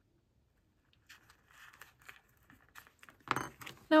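Paper envelope rustling and small metal clicks from hands handling the envelope and a small metal embellishment. Silent for about the first second, with faint scattered clicks after that and a louder clatter shortly before the end.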